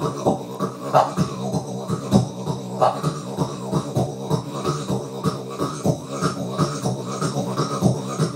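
Didjboxing: vocal beatboxing combined with a didgeridoo-style drone, made with the mouth and cupped hands into a microphone played through a bass amp with no effects. A steady low drone runs under a fast, dense rhythm of percussive beats and clicks.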